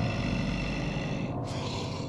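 Soundtrack drone: several steady held tones over a low, rough rumble, with a brief break in the upper tones about a second and a half in.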